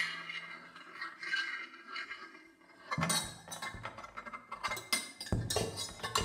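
Amplified cymbals played by hand through a contact mic in free improvisation: metal rubbed and scraped against the cymbals, with a shimmer of ringing overtones. From about three seconds in come sharper clinks and strikes, and near the end a run of low knocks.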